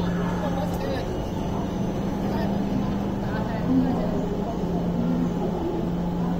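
Steady low hum of an ODEG double-deck electric train standing at a station platform, over station background noise with faint distant voices.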